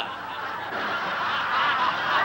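An audience laughing, a steady wash of many voices.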